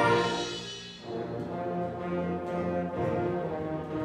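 School concert band playing: a loud full-band passage dies away about a second in, and a softer passage follows, with low instruments holding long notes under lighter lines.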